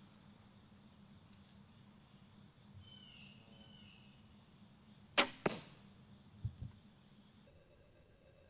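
A traditional wooden bow shot: the string is released with a sharp snap about five seconds in, followed a quarter second later by a second, fainter crack. About a second later come two low thuds.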